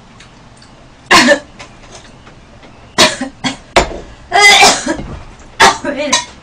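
A woman coughing, five short, loud coughs spread over a few seconds, the longest one near the two-thirds mark with some voice in it.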